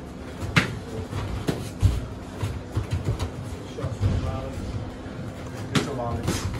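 Muay Thai sparring strikes: sharp slaps of gloved punches and kicks landing, several times, with the loudest about half a second in, at about a second and a half, and near the end, and softer thuds in between.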